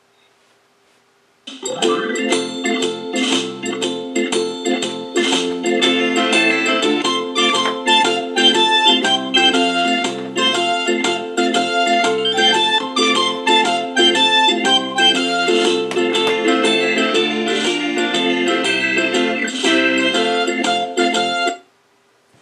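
Instrumental keyboard music from a YouTube audio library track, played over Bluetooth through the disco light ball's built-in speaker. It starts about a second and a half in and cuts off suddenly near the end.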